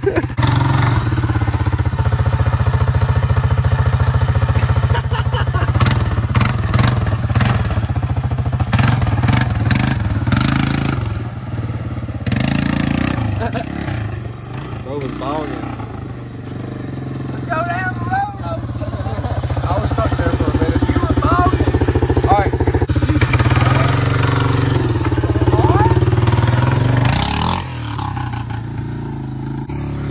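ATV engine running steadily close to the microphone. It dips in loudness for a few seconds near the middle, then picks up again.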